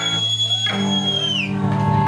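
Live rock band with electric guitars, bass and drums holding a ringing chord, with a high piercing tone held over it for about a second and a half that slides up at the start and falls away at the end.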